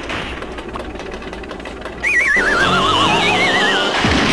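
A horse whinnying about halfway through: a loud, quavering neigh that falls in pitch, with a second higher quavering cry overlapping it. Before it there is only quieter steady background noise.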